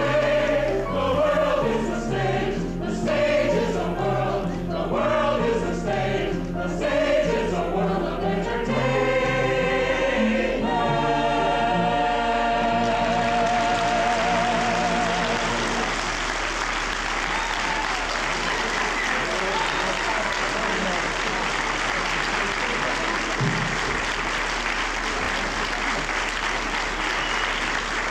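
A mixed chorus sings the closing bars of a song and ends on a long held chord with vibrato. Audience applause follows from just past the middle to the end.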